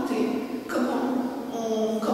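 A woman speaking French.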